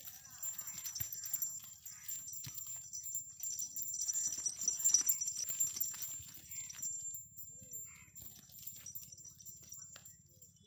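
Hooves of a small Punganur bull clopping irregularly on a dirt path as it is led on a rope, with light jingling.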